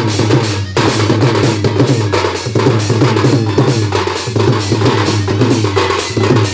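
Odia wedding band (biha baja) playing: fast, dense dhol drumming under a wind instrument's melody, with a brief break just under a second in.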